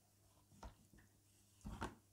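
Faint handling noises from a cloth full of soft milk curds being worked in a strainer: one soft knock about two-thirds of a second in, then a louder quick pair of knocks near the end.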